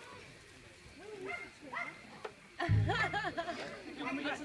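Voices of a small group of young people: a few short calls at first, then louder overlapping voices from about two and a half seconds in.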